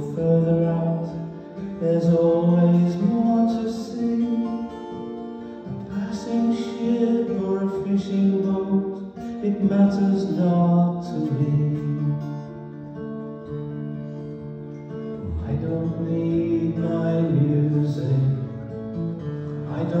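Live acoustic song: a strummed acoustic guitar under a man's sung melody, with no clear words.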